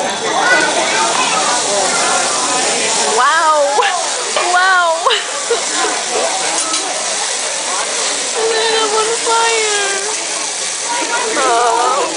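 Vegetables sizzling on a hot teppanyaki griddle under busy restaurant chatter, with excited exclamations from diners about three to five seconds in.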